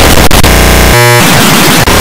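Extremely loud, heavily distorted and clipped digital audio effects: a harsh wall of noise, broken about a second in by a short buzzy tone before the noise returns.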